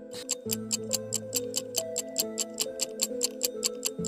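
Countdown clock-ticking sound effect: quick, even ticks, about seven a second, over soft background music.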